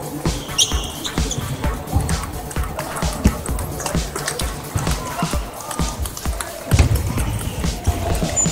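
Table tennis balls clicking off bats and tables again and again across a busy hall with many matches going at once, over a hubbub of voices.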